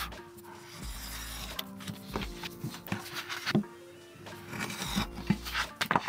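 Background music over several strokes of a blade cutting through a sheet of plotted paper card, with a few light clicks.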